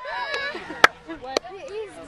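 High-pitched voices near the microphone, with two sharp snaps about half a second apart near the middle, the first of them the loudest sound.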